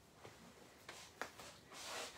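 Faint rubbing and rustling of woven carrier fabric as the straps are pulled through and tightened, with a few soft taps and a longer swish near the end.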